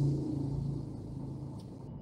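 Car engine idling, heard from inside the cabin as a steady low hum with a faint fan-like hiss over it. The sound cuts off abruptly just before the end.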